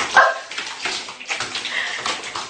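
A cat in a bathtub gives a short cry about a quarter-second in and a higher call near the end, amid sharp knocks and scrabbling against the tub.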